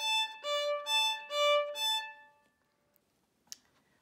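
Solo violin playing short bowed notes that alternate between two pitches a fifth apart, D and A. These are stopped by the third finger on the A string and on the E string, which passes across both strings without hopping. There are about five notes, ending a little past halfway, and a faint click comes near the end.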